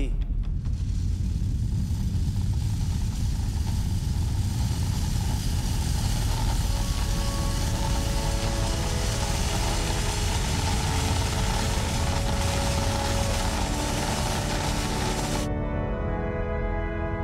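A loud, steady rushing noise with a heavy low rumble, with sustained music notes swelling in over it from about halfway. The noise cuts off suddenly just before the end, leaving rich held music tones.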